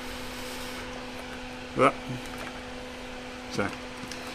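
Steady hum of a small fan motor with a faint hiss of moving air.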